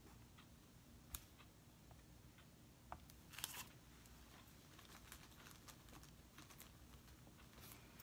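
Near silence: room tone with a few faint, sharp clicks and a brief rustle about three and a half seconds in.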